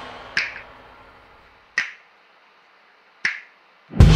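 The last notes of a rock song ring out and fade. Three sharp, dry clicks follow, evenly spaced about a second and a half apart, and then the next rock song starts loudly with drums, bass and guitar right at the end.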